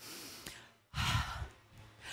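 A woman breathing audibly: two breaths, the second, about a second in, louder and sigh-like.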